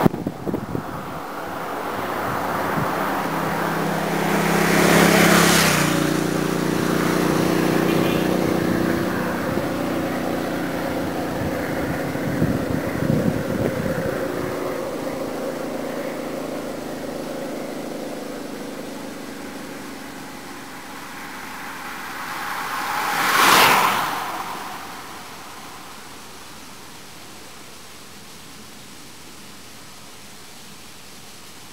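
A motorcycle passes close about five seconds in, its engine note dropping in pitch as it goes by, then fading slowly down the road. About three-quarters of the way through, a short rush of tyre and wind noise with no engine note: the breakaway group of racing cyclists sweeping past at speed on the descent.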